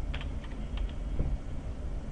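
Computer keyboard typing: about half a dozen separate key clicks in the first second or so, over a steady low hum.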